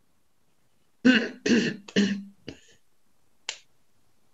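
A woman clearing her throat in three short bursts, followed by a single sharp click about three and a half seconds in.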